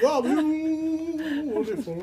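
A man singing, unaccompanied, one long held note with vibrato, then a few short notes.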